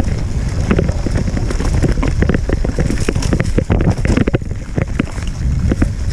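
Wind buffeting the microphone on a mountain bike ridden over a rough dirt trail, with a steady low rumble and frequent rattles and knocks from the bike and camera jolting over bumps.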